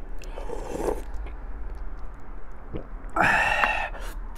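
A spoonful of hot sinigang broth slurped from a metal spoon, a short sip about half a second in, then a louder, breathy sound near the end as he takes in and savours the broth.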